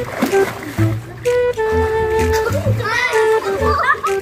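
Pool water splashing as a boy falls backwards into it, strongest in the first half second. It plays over background music with a flute-like melody, and children's voices shout and laugh in the last second or so.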